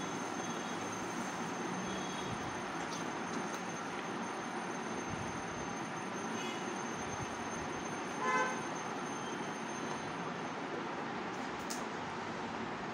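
Steady hiss of background noise, with one short horn toot about eight seconds in.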